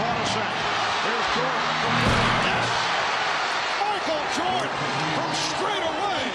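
Packed basketball arena crowd cheering steadily, with music and indistinct voices mixed underneath.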